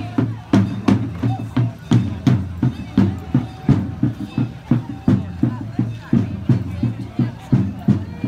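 Parade drums beating a steady marching rhythm, about two to three strokes a second, with crowd voices over it.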